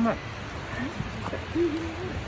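A person's brief, low hum, steady in pitch, near the end, after a phrase of speech ends at the start.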